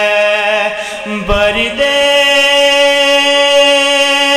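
A young man's voice reciting an Urdu noha (mourning lament) into a microphone, chanting in long drawn-out held notes. About a second in the note breaks off with a brief low thump, and a new long note on a different pitch begins shortly after.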